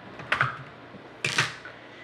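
Plastic Lego pieces clacking as the roof of a Lego van is pulled off: two sharp clacks about a second apart.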